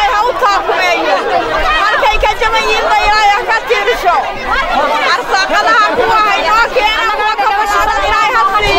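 A woman talking continuously, with other voices chattering behind her.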